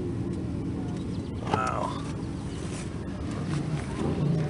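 A voice talking briefly in the background about one and a half seconds in, over a low steady rumble.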